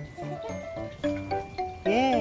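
Background music: a melody of short notes stepping up and down. Near the end a louder sliding tone rises and then falls.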